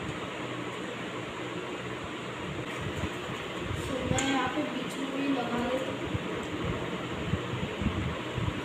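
Steady background hiss and hum, with a faint, indistinct voice in the background about halfway through.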